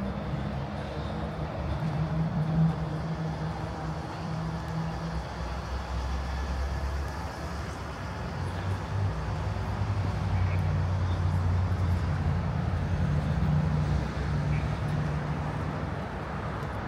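City street traffic: a low, steady hum of car engines idling and moving nearby, growing louder in the second half.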